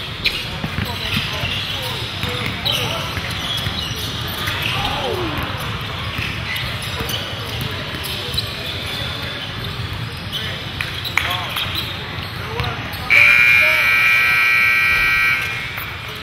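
Basketball court sounds in a gym: sneakers squeaking on the hardwood, the ball bouncing and players' voices. About thirteen seconds in, the scoreboard buzzer sounds loudly and steadily for about two and a half seconds, marking the game clock running out.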